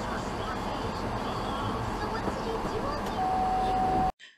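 Interior sound picked up by a van's dash camera after the van has come to a stop: a steady rumbling noise with faint voice-like fragments. About three seconds in, a single steady beep tone starts and holds.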